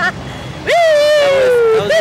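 A rider's long whoop, "woo!", held for about a second with its pitch slowly falling.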